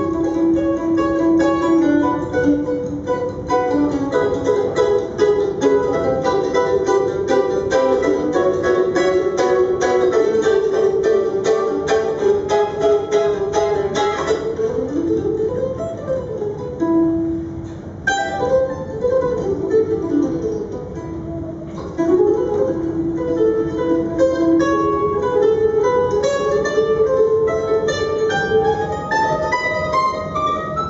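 Solo F-style mandolin played unaccompanied: fast, dense picking through the first half, then looser runs of rising and falling melodic lines, briefly softer about two thirds of the way in.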